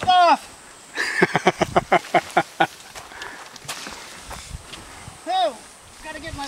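A person's short exclamation, then a quick burst of laughter lasting about a second and a half, and another short exclamation near the end.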